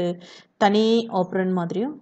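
A woman speaking, with a brief pause about half a second in.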